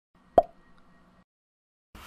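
Intro animation sound effects: a single short, sharp pop with a brief ring, followed near the end by the start of a rising whoosh.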